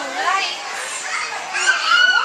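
Many children's voices chattering and calling out at once, with a louder high-pitched child's voice near the end.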